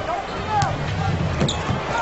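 Basketball dribbled on a hardwood court, with a few sharp knocks, over steady arena crowd noise.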